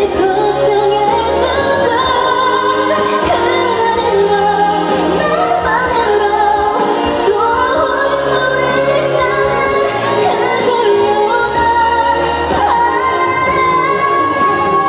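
A woman singing a Korean pop song live into a handheld microphone over instrumental accompaniment, holding long, sustained notes.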